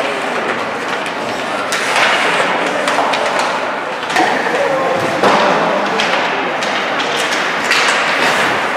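Ice hockey play: a steady scraping din of skates on the ice, broken a few times by sharp knocks of sticks, puck and players against the boards, with voices calling out.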